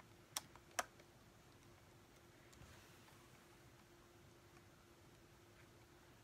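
Two sharp, light clicks less than half a second apart in the first second, as the plastic battery cover is fitted back onto the base of a castle water globe; then near silence with a faint steady hum.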